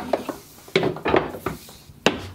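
Clattering knocks and rubbing from an electrical cable and plug being handled against the wooden frame of a homemade steam generator cart, loudest about a second in.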